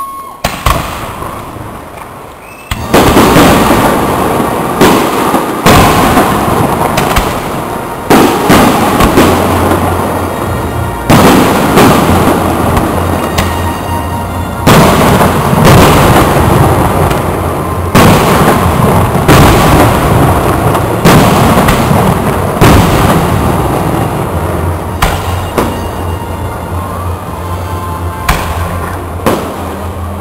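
Aerial fireworks display: a dense, continuous barrage of shell bursts and crackling, loud, with heavy bangs every second or two from about three seconds in after a quieter start.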